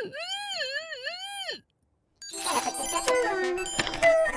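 A cartoon frog character's voice wailing in several rising-and-falling swoops for about a second and a half, then cutting off. After a short silence, cartoon background music with bright tinkly notes starts about halfway in.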